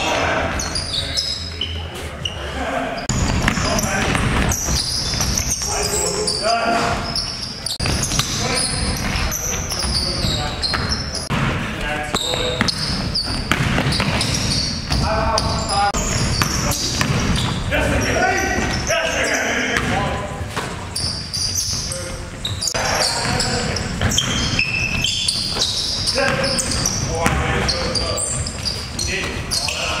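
Basketball bouncing on a gym's hardwood floor during play, among players' unclear calls and shouts, with the echo of a large hall.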